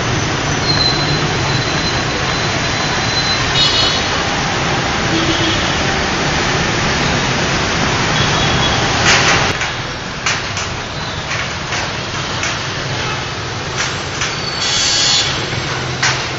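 Dense motorbike and scooter traffic passing in a steady wash of engine and tyre noise, with a few short high horn beeps. About ten seconds in, the traffic noise drops and scattered clicks and knocks follow.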